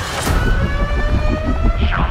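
A siren-like tone rising slowly in pitch over a deep rumble and rapid low pulsing, part of a film trailer's sound mix.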